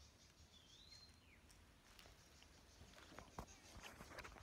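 Near silence, with one faint bird whistle that rises and then holds steady about a second in, and a few faint ticks later on.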